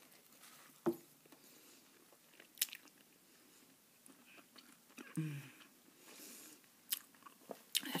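Close-miked chewing of a mouthful of burger, with a few sharp crunches and mouth clicks at intervals of a second or more.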